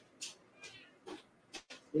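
A house cat meowing faintly, a few short calls, with light clicks in between.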